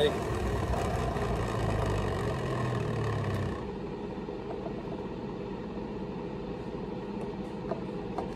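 Nutribullet centrifugal juicer's motor running with a steady hum, then cutting out about three and a half seconds in as it is switched off. A few light clicks of a spoon in the juice jug follow near the end.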